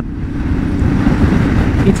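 Yamaha Ténéré 700's 689 cc parallel-twin engine running at road speed, mixed with wind and road noise rushing over the rider's microphone.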